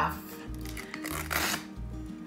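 Masking tape being peeled off a freshly painted stripe: two short rasping tears, about half a second in and again past the middle, over quiet background music.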